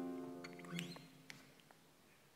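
Flamenco acoustic guitar: a chord rings and fades over the first second, with a few soft short notes and clicks, then it goes almost quiet.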